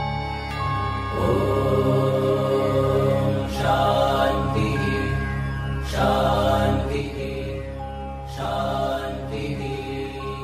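Meditative devotional music with a low drone and long, held chanted syllables of a mantra, with a new phrase entering about every two and a half seconds.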